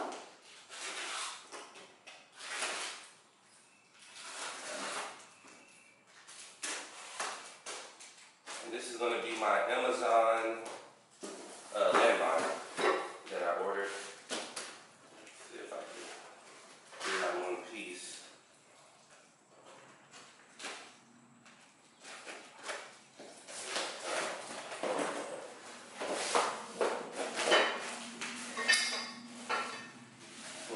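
A cardboard shipping box being opened by hand: flaps pulled open and packing pulled out, with irregular crackles, knocks and scrapes of cardboard throughout, busiest around 9 to 14 seconds in and again near the end.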